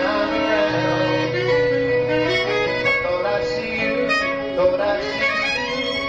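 Live band playing an instrumental passage: a saxophone carries a sustained melody over guitar and a held bass line.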